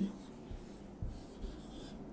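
Marker pen writing on a whiteboard: faint strokes of the tip across the board.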